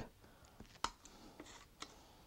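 Faint scratching of a pointed hobby tool scoring a thin plastic model part under hard pressure, with two small clicks about a second apart.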